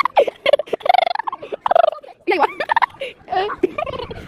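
A girl laughing hard in a string of short, high, choppy bursts.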